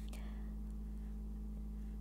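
Quiet room tone with a steady low hum, and one faint, brief sound a fraction of a second in; no pen scratch stands out.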